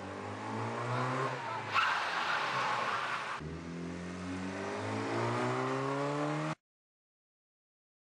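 A car engine running and accelerating, its pitch climbing through the second half, with a rush of road noise about two seconds in. The sound cuts off suddenly about six and a half seconds in.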